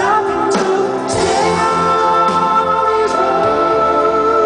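Live pop ballad: a male singer's voice over sustained keyboard chords and band, recorded from the audience in a concert hall.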